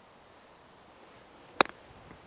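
A single sharp click about one and a half seconds in: a 54-degree wedge striking a golf ball on a chip shot.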